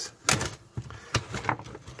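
Handling noise from a metal equipment chassis and its circuit boards being moved on a workbench: a few short clicks and knocks, the loudest shortly after the start.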